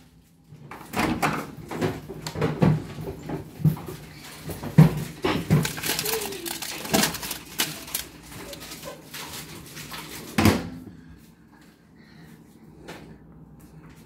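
Knocks and clatters of a microwave oven being loaded: the door opened and a paper bag of microwave popcorn set on the glass turntable, ending in a loud clunk of the door shutting about ten and a half seconds in. After that only faint clicks.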